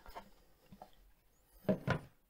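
A few faint, soft handling clicks and rubs from a cardboard watch box being opened, with long quiet stretches between them. A short spoken word comes near the end.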